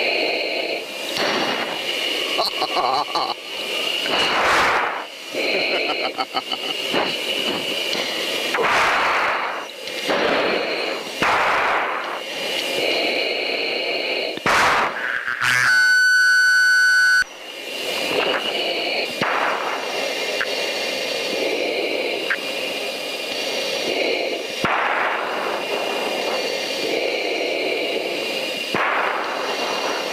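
F-15 cockpit noise during the climb: a steady hiss with high whining tones, broken again and again by surges of rushing noise. A short laugh about nine seconds in, and a loud, steady electronic tone lasting over a second about sixteen seconds in.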